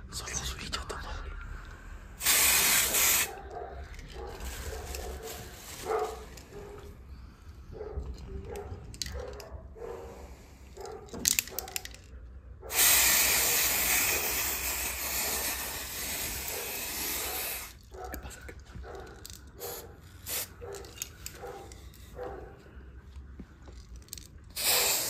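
Aerosol can of coloured hair spray hissing in bursts: a spray of about a second about two seconds in, a couple of quick puffs just before the middle, and a long spray of about five seconds just after the middle.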